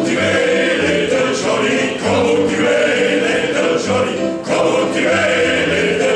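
Men's vocal ensemble singing a country-style song in harmony, with low bass notes pulsing underneath.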